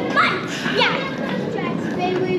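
A child's high voice calling out briefly in the first second, with other children's voices around it.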